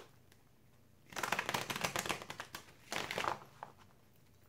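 Tarot cards being shuffled by hand: a dense run of rapid card flutter starting about a second in, and a second, shorter burst about three seconds in.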